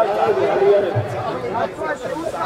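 People talking close to the microphone, with voices overlapping in casual chatter.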